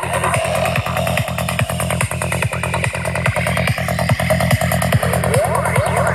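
Psychedelic trance played live over an outdoor festival sound system: a pounding kick and rolling bassline at about two and a half beats a second under buzzing synth lines, with rising synth sweeps near the end.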